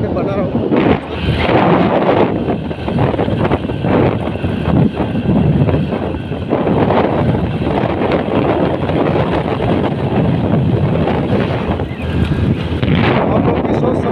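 Heavy wind buffeting on the microphone of a moving motorcycle, rising and falling in gusts, with road and engine noise underneath.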